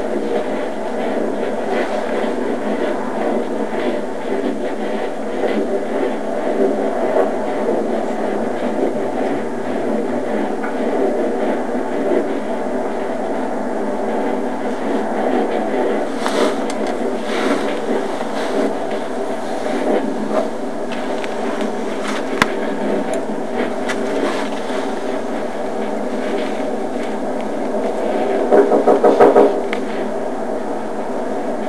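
Steady rumbling noise like a vehicle in motion, thin and muffled as on a small body-worn recorder, with a short run of louder rapid knocks near the end.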